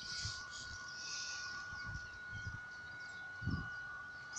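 Faint outdoor hillside ambience: a light hiss with a few faint distant bird chirps and low rumble of wind and handling on the phone microphone, under a thin steady high-pitched whine. A short low bump about three and a half seconds in.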